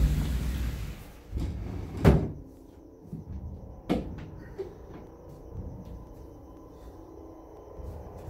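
A heavy cabinet being shoved across the floor and up against a door: low scraping and rumbling, a loud thud about two seconds in, and a smaller knock near four seconds.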